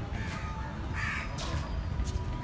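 A crow cawing twice in short, harsh calls, about a quarter second and about a second in, over a low background rumble.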